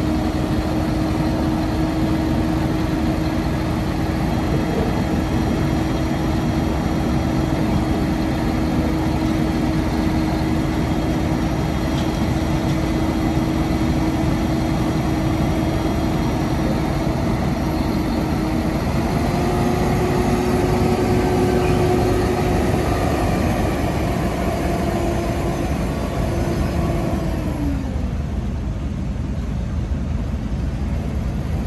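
Kubota M7-151 tractor's four-cylinder turbo diesel running as the tractor drives slowly. A steady tone in its sound steps up in pitch about two-thirds of the way through, then drops away a couple of seconds before the end.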